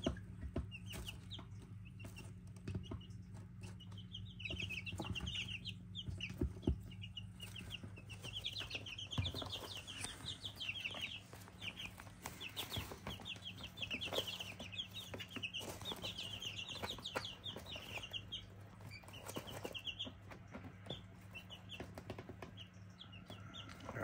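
Two-week-old chicks peeping: repeated runs of quick, high chirps, with scattered light clicks and scratches, over a steady low hum.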